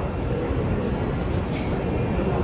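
Steady low rumbling background noise of an airport terminal hall, with no distinct events.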